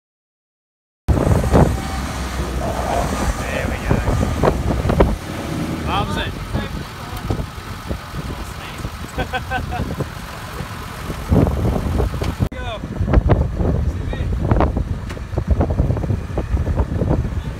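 About a second of silence, then a vehicle engine running at idle with a steady low rumble, under scattered indistinct voices; the sound jumps at an edit a few seconds before the end.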